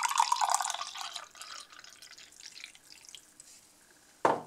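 Uncarbonated iced tea poured from a large aluminium can into a glass mug: a splashing stream that is loudest in the first second, then tapers off into a few scattered drips.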